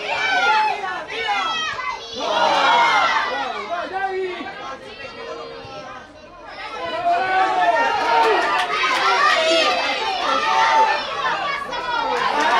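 Many voices shouting and calling over one another, several of them high-pitched, with a lull of a couple of seconds around the middle before the shouting picks up again.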